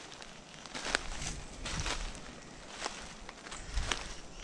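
Footsteps through dry leaf litter on a forest floor: uneven rustles with a few sharp clicks.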